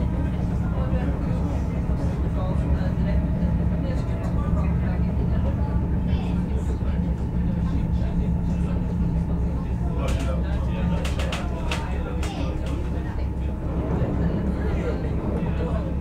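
Commuter train running, heard from inside the carriage: a steady low rumble with a faint steady whine through the middle, and a quick run of sharp clicks about ten seconds in. Passengers' voices murmur in the background.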